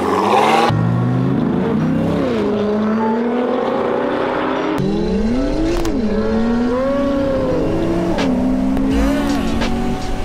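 A Chevrolet Corvette C7's V8 and a Nissan GT-R's twin-turbo V6 launch from a standing start and accelerate flat out through the gears. There is a burst of noise at the launch, then the engine note climbs and falls back at each upshift. The sound changes abruptly a little under halfway through.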